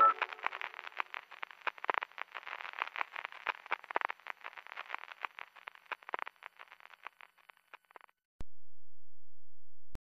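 A patter of irregular short clicks, thick at first and thinning out until it stops about eight seconds in. Then a sharp click and a steady, very low hum.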